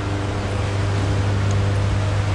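Steady city street noise: an even low hum with traffic and a faint steady drone, with no sudden sounds.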